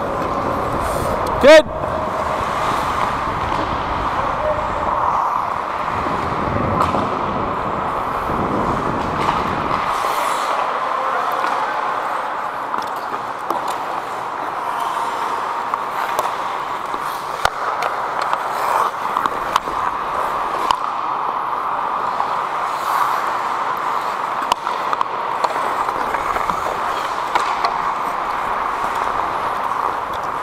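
Ice hockey in play, heard from a skating referee's helmet: a steady scraping hiss of skate blades on ice with scattered clicks of sticks and pucks. About a second and a half in there is one loud, sharp knock.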